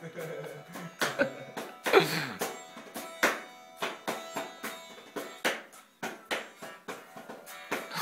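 A small acoustic guitar strummed loosely, single strums about a second apart with the chords ringing on between them.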